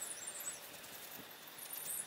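Quiet outdoor background with faint high-pitched chirping, near the start and again near the end.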